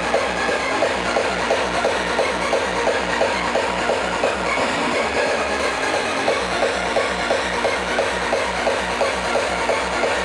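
Hardcore electronic dance music from a DJ set, played loud over a festival sound system and heard from within the crowd, with a fast, steady kick-drum beat, about three beats a second.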